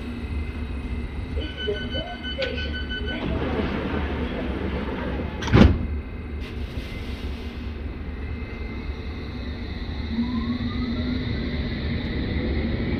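London Underground S8 Stock train standing at a station: door-warning beeps, then the doors sliding shut with a loud thump about halfway through. Near the end the traction motors start to whine, rising in pitch as the train pulls away.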